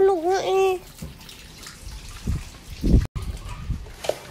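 A toddler's wordless sing-song voice during the first second, then low thumps and rumble from the handheld phone's microphone being handled. The sound drops out for an instant about three seconds in.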